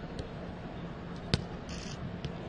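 A football being kicked hard: one sharp thud a little past halfway, with a fainter tap near the start, over a steady low hum.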